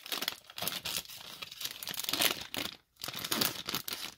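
Clear plastic wrapping on a Pokémon card First Partner Pack crinkling as it is handled, in dense irregular crackles with a brief pause near three seconds.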